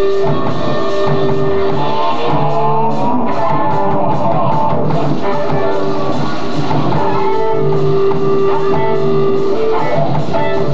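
Live rock band playing an instrumental passage on hollow-body electric guitar, violin, bass guitar and drum kit, with long held notes and a run of sliding notes about three seconds in.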